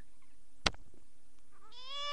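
A young baby starts a thin, high-pitched cry near the end, its pitch rising and then falling. It is preceded by a single sharp click about two-thirds of a second in.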